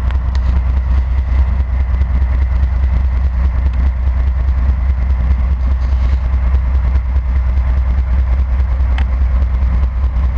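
Norfolk Southern diesel locomotive rolling slowly past close by, its engine and wheels giving a steady deep rumble.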